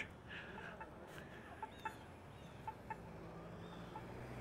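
Faint outdoor street ambience with small, short ticks and chirps recurring about once a second.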